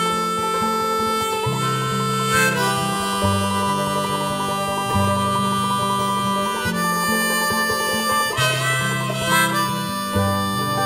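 Harmonica in a neck rack playing an instrumental break in long held notes over strummed acoustic guitar and mandolin.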